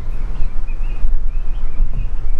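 Low, uneven rumble of a moving car with wind on the microphone at the open side window, and faint short bird chirps above it several times.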